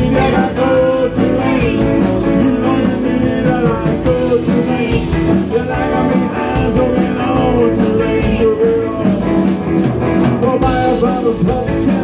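Live band playing a rock-and-roll blues number with electric guitar, bass guitar and drums, in an instrumental stretch between sung verses; the singing comes back near the end.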